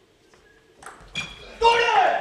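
Near silence for about a second, then voices in the hall, ending in a loud shout.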